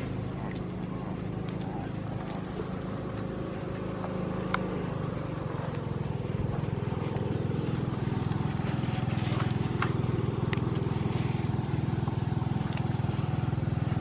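A steady motor-like drone, a little louder in the second half, with a few faint sharp clicks over it.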